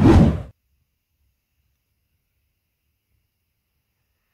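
A short, loud rush of noise on the phone's microphone lasting about half a second, then dead silence where the recording cuts off.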